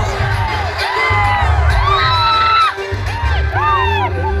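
Live music over a PA with a heavy, pulsing bass beat, while a crowd cheers and whoops.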